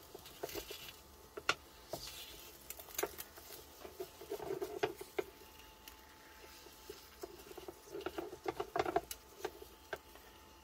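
Wooden spatula scraping and tapping against the non-stick plate of an electric omelette maker while being worked under a fried egg, giving small scattered clicks with a few duller knocks.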